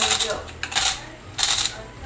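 Hand pepper mill being twisted to grind pepper, three short gritty grinding strokes about two-thirds of a second apart.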